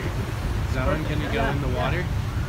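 Indistinct voices talking for about a second in the middle, over a steady low rumble.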